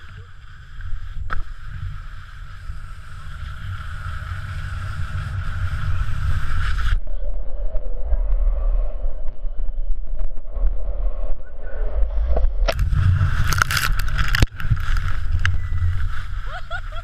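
Wind buffeting the microphone of a pole-mounted action camera while skiing downhill, with skis hissing and scraping over the snow. The rushing hiss builds over the first several seconds and cuts off abruptly about seven seconds in, while the low rumble of the wind carries on. Harsher scraping from the skis sets in about three seconds before the end.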